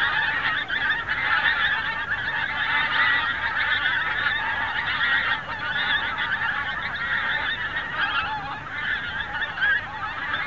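A large flock of pink-footed geese calling overhead: a dense, continuous chorus of many overlapping honking calls.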